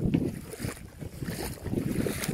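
Wind buffeting the phone microphone outdoors: a rough, uneven low rumble with no steady tone.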